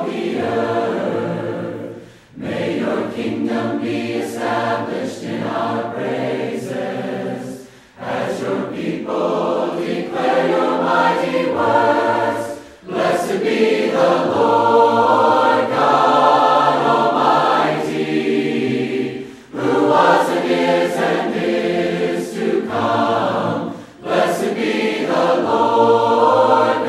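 A choir singing in long phrases of about four to six seconds, each separated by a brief pause for breath.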